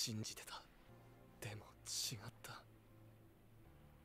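Quiet Japanese anime dialogue: a few short, soft spoken phrases with hissy s-sounds, over faint background music with a steady low drone.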